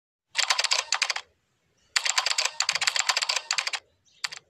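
Rapid computer-keyboard typing clicks in two runs: a short run of about a second, a pause, then a longer run of nearly two seconds. They sound like a typing sound effect laid under text appearing on screen.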